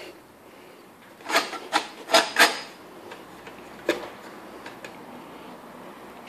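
Stainless steel tracking gauge parts scraping against each other as they are handled: four short scrapes over about a second, then a single sharp click and a few faint ticks.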